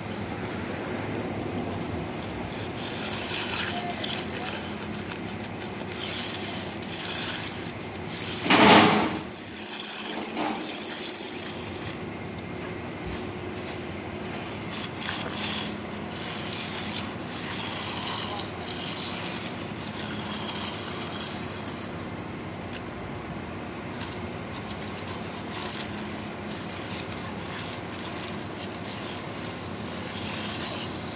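A hand concrete edger scraping along the edge of freshly poured, still-wet concrete in repeated short strokes, over a steady low hum. About nine seconds in, a loud, brief rush of noise stands out above it.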